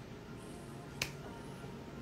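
A single short, sharp click about halfway through, over faint room tone.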